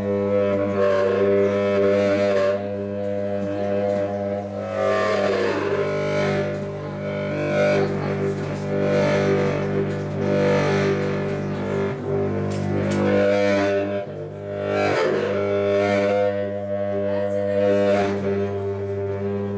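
Tubax (compact contrabass saxophone) playing one unbroken low drone with shifting overtones above it. The low note changes about five seconds in and returns near thirteen seconds, with a few faint clicks late on.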